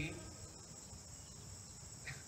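Faint, steady high-pitched chorus of insects.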